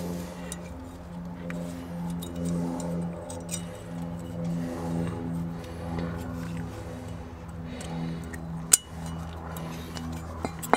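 Light metallic clicks as steel brake-pad shims are pressed onto a brake caliper carrier by hand, with one sharper click near the end. A steady low hum that pulses about twice a second runs underneath and is the loudest thing throughout.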